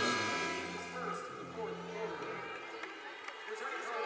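Basketball arena during a dead ball: music fading out over the first couple of seconds, under indistinct voices and crowd chatter.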